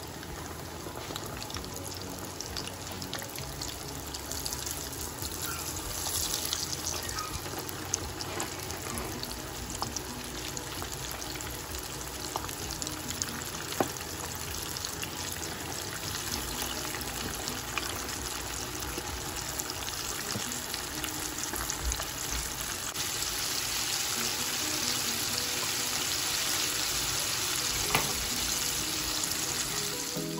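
Flour-coated chicken legs deep frying in hot oil in a pot: a steady sizzle full of small crackles and pops, growing louder as more pieces go into the oil.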